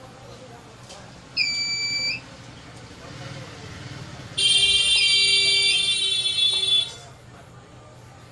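A digital multimeter's test buzzer sounding as the probes are held on the contacts of an LED bulb's circuit board: a short, clean beep of under a second, then a louder, harsher buzz lasting over two seconds.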